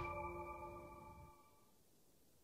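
The tail of a TV show's bumper jingle: several held tones ring out and fade away, dying to silence about a second and a half in.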